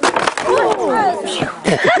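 A sudden crash and clatter of knocks, with startled voices crying out, as something gives way or people fall. Laughter starts near the end.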